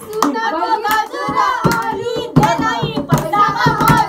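A group clapping hands, with irregular sharp claps throughout, mixed with several voices singing along.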